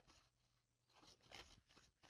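Near silence, with a few faint, short rustles of a tarot deck being shuffled by hand in the second half.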